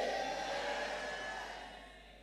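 A congregation's drawn-out 'Amen' response, many voices together, fading away steadily over about two seconds.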